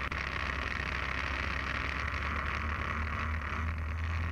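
Fixed-wing UAV's engine and propeller running steadily in cruise flight, heard from a camera on the airframe: an even low hum with a hiss of rushing air over it.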